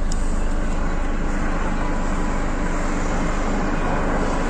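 Steady outdoor mechanical rumble and hiss with a low hum through it, recorded on a phone.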